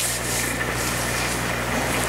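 Steady background hiss with a low, even electrical hum, and a brief paper rustle right at the start as a Bible page is handled.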